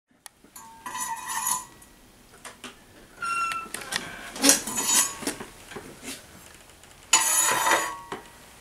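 Steel tools clinking and scraping as a glowing enameled copper piece on a steel mesh rack is drawn out of a hot enameling kiln with a long-handled firing fork and set down on a stone slab. The kiln door is worked as well. There are four separate bursts of scraping with a light metallic ring, the last near the end.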